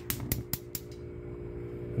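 Gas stove burner's spark igniter clicking rapidly, about five clicks in under a second, as the burner lights. The stove has been switched from LP to natural gas but still has the small LP jets.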